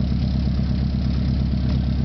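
Volkswagen Gol GTi's four-cylinder engine idling steadily, heard from inside the cabin.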